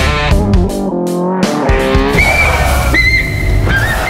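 Music from a Tamil film song: a loud, steady beat under a held melodic note in the first half. A high, whistle-like melody line comes in about two seconds in.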